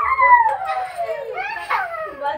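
A high-pitched voice, likely a child's, giving one long falling squeal and then a short rising whoop, with excited voices around it.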